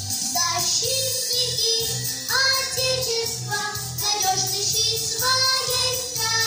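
A group of young girls singing a song in unison over a backing track with a steady beat.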